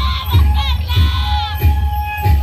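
Andean carnival music with a steady drum beat about three times a second, and high-pitched shouts and whoops from the dancers over it in the first second and a half.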